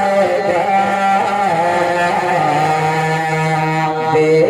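A man's voice singing a naat into a stage microphone in long held, wavering notes, settling onto a lower held note about halfway through.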